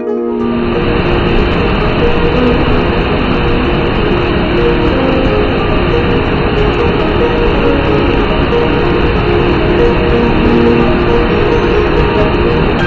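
Steady rushing of a whitewater cascade pouring over rock, setting in just after the start, under background music with held plucked-string notes.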